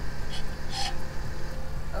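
A steady low rumble, with two short hissy sounds about a third of a second and just under a second in.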